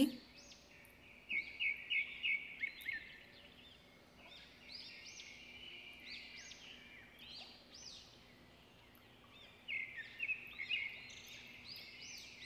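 Small birds chirping in quick series of short high chirps, in a busy cluster a second or so in and another near the end, with fainter chirps between.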